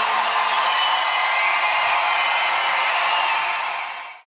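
Large studio audience cheering and applauding, a steady wash of noise that fades out quickly at the very end.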